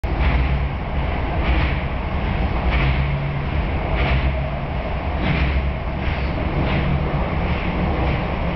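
Tokyo Metro Yurakucho Line subway train running through a tunnel: a steady, loud rumble with a brighter rushing swell about every second and a quarter.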